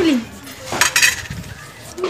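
A brief clatter of sharp clinks and knocks from small hard objects, loudest about a second in, with a few fainter knocks after.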